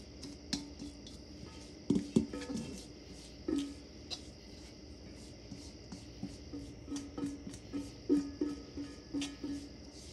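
A spatula scraping chopped cabbage off a stainless steel pan into a crock, knocking against the metal pan, which rings briefly at the same pitch after each knock. There is a cluster of knocks about two seconds in and a run of quicker ones over the last three seconds.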